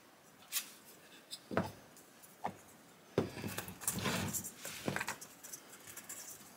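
Balsa wood pieces knocked and set down on a workbench, three separate taps in the first half. Then, from about halfway, a run of rough rubbing strokes as a razor plane starts shaving the balsa fuselage.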